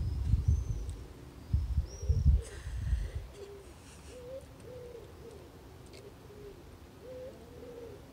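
Low bumps and rustling for the first three seconds, then a pigeon cooing over and over, its low wavering coos carrying on to the end, with a couple of faint high bird chirps early on.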